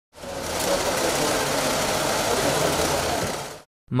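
Banknote counting machine running steadily, then dying away about half a second before the end.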